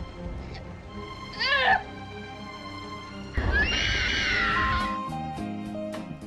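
Film soundtrack music with two high, wavering, cat-like cries: a short one about a second and a half in and a louder, longer one from about three and a half seconds to five, after which a few held musical notes step along.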